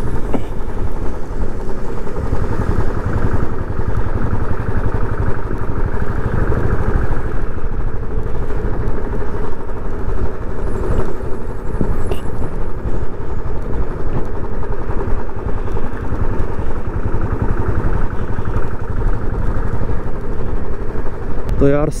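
Royal Enfield single-cylinder motorcycle engine running steadily on the move, its low, rapid beat mixed with heavy wind rush over a helmet-mounted camera microphone.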